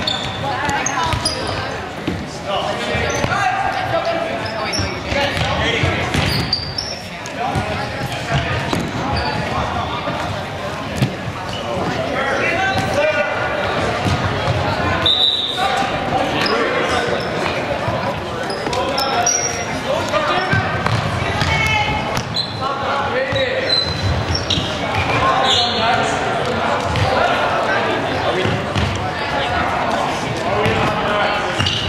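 Handball game on a hardwood gym floor: the ball bouncing, shoes squeaking in short high chirps, and players calling out, all echoing in a large gymnasium.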